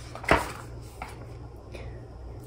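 A picture-book page being turned: one short paper swish about a third of a second in, then a faint tap, over a low steady room hum.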